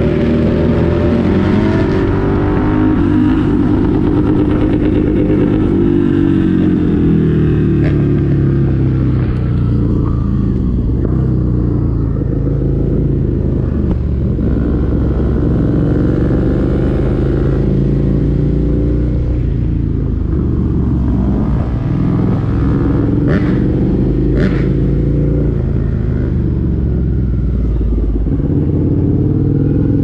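Dirt bike engine running at speed, its pitch rising and falling again and again as the rider accelerates, shifts and backs off the throttle. Two short sharp clicks come about three-quarters of the way through.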